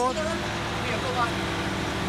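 Truck engine idling steadily with an even low beat, with faint voices over it.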